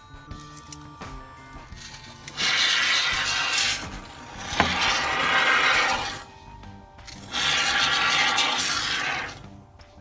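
Aerosol can of Gaps and Cracks expanding foam sealant spraying in three hissing bursts of one to two seconds each, with a sharp click between the first two. Background music plays underneath.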